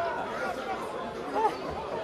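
Several people's voices chattering and calling out around a football pitch, with one louder call about one and a half seconds in.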